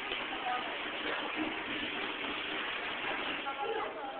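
Indistinct babble of many overlapping voices, children and adults, steady throughout with no single clear speaker.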